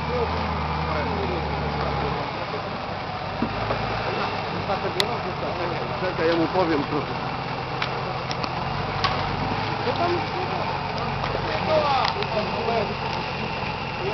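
Nissan Patrol Y60's 4.2-litre straight-six diesel running at low revs as the truck crawls down a steep snowy bank, its note dropping about two seconds in. Onlookers' voices can be heard over it.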